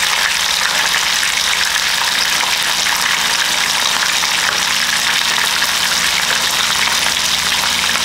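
Steady sizzling from food frying in pans on a gas stove, with stock pouring from a jug into the saucepan.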